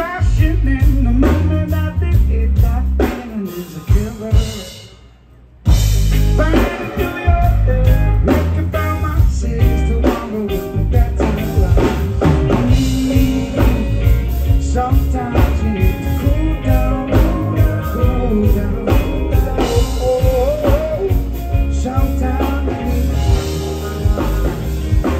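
A live reggae band playing with a lead vocal, bass, drums and guitar. About four seconds in, the music tails off into a brief break of about a second, then the full band comes back in together.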